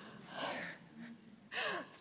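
A woman's audible breathing close to the microphone: a soft breath about half a second in, then a quick intake of breath near the end just before she speaks again.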